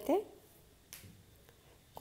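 A woman's voice trails off, then near silence with a single faint click about a second in.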